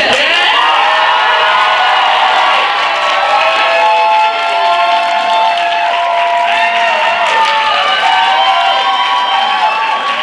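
A small group of young people cheering and whooping, many voices at once, with long held cries at several pitches overlapping and arching up and down, and clapping toward the end.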